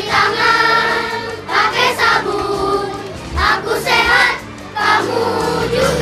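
A group of children singing together to a backing music track, in short phrases with brief pauses between them.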